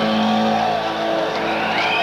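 Live band music, with long held high notes that bend up and down in pitch over a steady lower drone.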